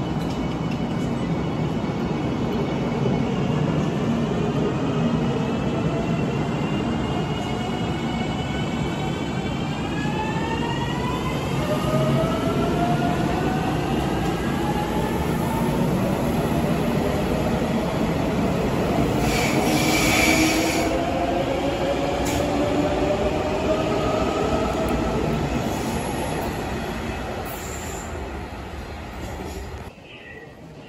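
Electric limited express train pulling out of the station. Its motors whine in several pitches that rise steadily as it gathers speed, over the rumble of the wheels. There is a brief screech about two-thirds of the way through, and the sound fades away near the end.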